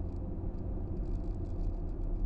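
Steady low rumble of road and engine noise inside a car cruising on a motorway.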